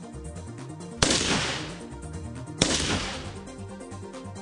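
Two shots from a Dragunov semi-automatic sniper rifle, about a second and a half apart, each a sharp crack with a long fading tail, over background music.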